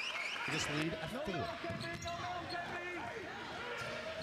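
Game sound from a basketball arena: many voices from the crowd and bench talking at once, with a basketball being bounced on the hardwood court.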